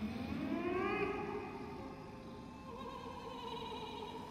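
Choir voices slide upward in pitch together for about a second, then hold long sustained tones.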